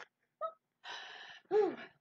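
A person's breathy gasp, a sharp intake of breath about halfway through, followed near the end by a short voiced sound that rises and falls in pitch.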